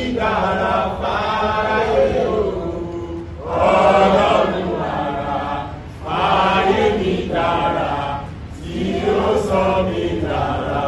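A group of voices singing a repeated chant-like refrain together, in phrases of about two to three seconds with short breaks between them.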